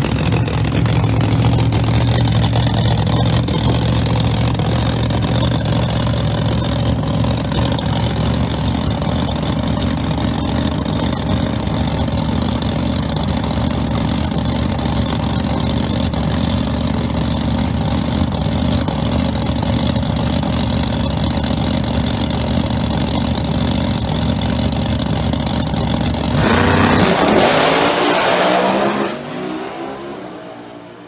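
Pro Mod drag cars' big V8 engines idling loudly and steadily at the starting line, then launching at full throttle about 26 seconds in: a sudden, much louder blast rising in pitch that fades fast as the cars run away down the track.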